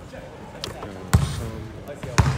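A basketball bouncing on a wooden gym floor, with one hard bounce about a second in and a lighter one shortly before it. Voices can be heard faintly in the background.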